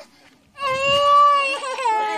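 A small child crying: after a short pause, one long, high wail begins about half a second in and wavers near its end.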